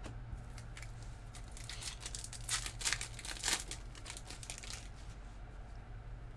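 Foil trading-card pack wrapper crinkling and tearing as it is opened, a flurry of crackly rustles from about one and a half to four seconds in, over a steady low hum.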